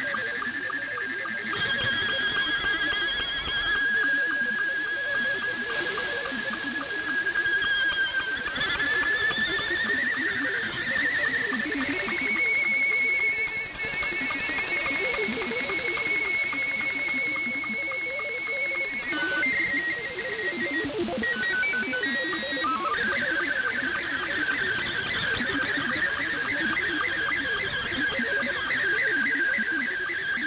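Shortwave digital-mode signal heard through the receiver. Scottie 2 SSTV image tones form a whistle that holds one pitch for seconds, climbs higher about a quarter of the way in, steps about briefly, then drops back. Beneath it are warbling THOR22 data tones and a hiss of band noise.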